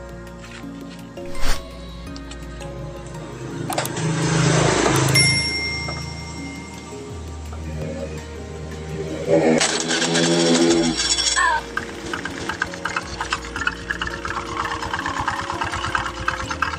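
Background music over a carburettor Honda Beat scooter engine that is started and runs in the second half with its CVT cover off. The belt and pulleys turn with a rapid, rough knocking rattle, 'klotok klotok', which is very loud; the mechanic traces it to metal rubbing on the pulleys. There is a loud clank about a second and a half in.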